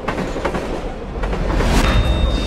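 Inside a moving passenger train carriage: the low rumble and clattering rattle of the train running, starting abruptly and growing louder in the second half.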